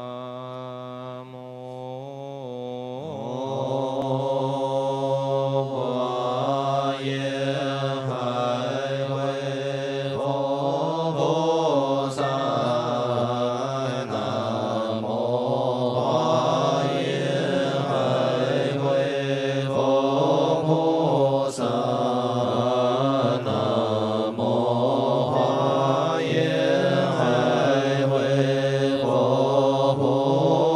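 Chinese Buddhist monastic assembly chanting liturgy in slow, long-drawn melodic fanbai style, sustained notes gliding gently in pitch. It is quieter at first and swells fuller and louder about three seconds in.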